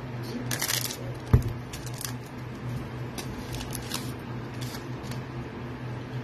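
Scissors cutting open a foil trading-card pack: a crinkling cut about half a second in and a sharp click a little after a second, then soft rustling and small clicks as the wrapper and cards are handled. A steady low hum runs underneath.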